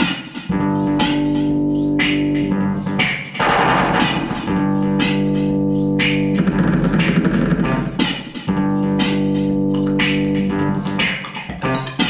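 Improvised experimental rock jam: long held chords that sustain for a few seconds at a time, interrupted by noisy, smeared swells.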